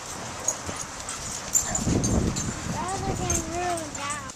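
A dog whining around a man greeting a pack of excited dogs: a short rough sound about halfway through, then one drawn-out wavering whine near the end.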